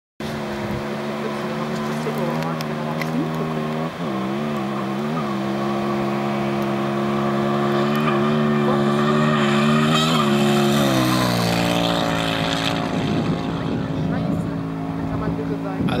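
Rally motorcycle engine running flat out at high speed, a steady high note that wavers briefly a few times and grows louder as it approaches. After about eleven seconds its pitch falls as it passes, and it fades into wind noise on the microphone.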